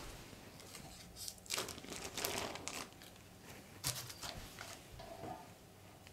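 Baking parchment (butter paper) crinkling and rustling as the turned-out cake is handled, in faint irregular bursts.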